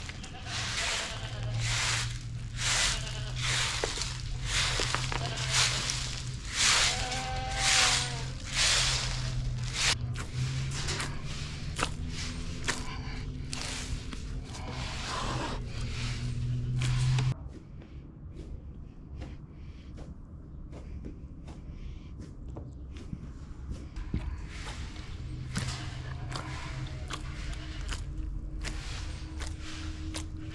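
A short straw hand broom sweeping a concrete yard in repeated scratchy strokes over a steady low hum. It cuts off abruptly about 17 seconds in, and the rest is quieter, with faint soft handling sounds of bread dough being kneaded in a metal basin.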